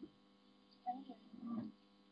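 Steady electrical hum, with two short, louder bursts of sound about a second in and near the end.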